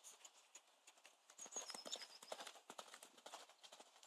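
Hoofbeats of a Welsh section D mare cantering loose on a loose arena surface: faint, irregular strikes that grow louder about a second and a half in.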